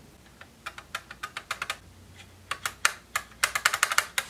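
A run of light, sharp clicks at an uneven pace, coming faster and louder in the last half-second or so, like fingers typing on keys.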